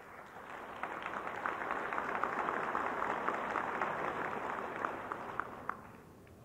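Convention audience applauding, building over the first second, holding steady, then dying away near the end.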